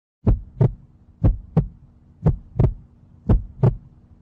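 Heartbeat sound effect: paired thumps, lub-dub, repeating about once a second over a faint steady hum.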